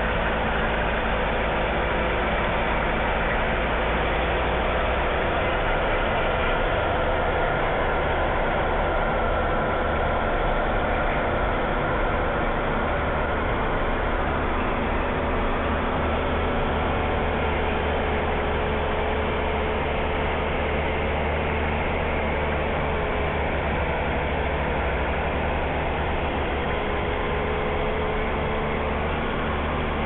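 Fendt tractor's diesel engine running steadily while it pulls a Krone 1400 rotary hay rake through cut grass. The drone holds an even level, with a slight shift in its low hum about five seconds in.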